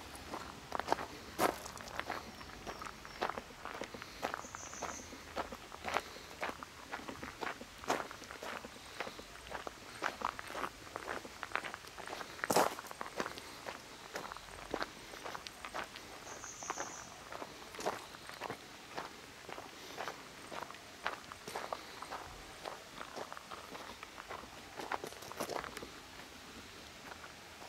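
Footsteps on a gravel path, about two steps a second at an even walking pace, with one louder crunch about halfway through.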